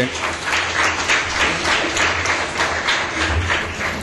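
Audience applauding: a dense patter of many hands clapping at a steady level.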